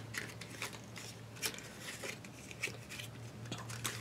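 Faint, scattered clicks and crinkles of a perfume sample's card-and-plastic packaging being handled and fiddled at by hand while someone tries to work out how to open it.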